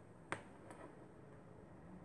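A single sharp click, followed by a much fainter one, against faint room tone.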